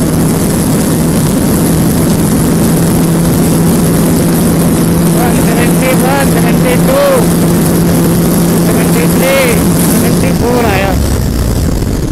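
KTM RC 390's single-cylinder engine held at full throttle at top speed, a steady high engine note under heavy wind rush. About ten seconds in, the throttle closes and the engine note drops away as the bike slows.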